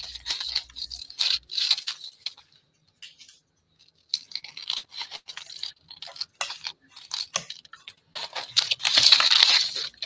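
Scissors cutting around a paper card shape in short, quick snips, with a pause of about a second and a half partway through. Near the end comes a louder stretch of paper rustling as scraps are handled.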